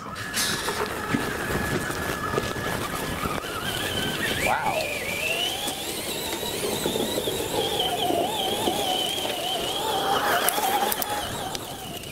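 Electric motor and drivetrain of a two-wheel-drive Traxxas Slash R/C car whining as it drives through soft snow on zip-tie snow chains, the whine rising about four seconds in and then holding high and wavering, over the hiss of snow thrown up by the wheels.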